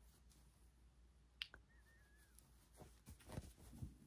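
Near silence with a few faint sharp clicks and taps from hands working a needle and yarn through fabric during hand embroidery, plus a faint short wavering squeak near the middle.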